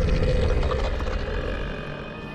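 Deep, rough growl of a giant cartoon polar-bear monster, a sound effect that starts loud and fades over about two seconds.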